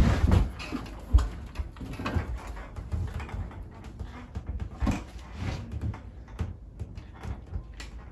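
Quiet wordless vocal sounds and movement from a person lying on the floor, with scattered rustles, a sharp knock right at the start and a low thump about a second in.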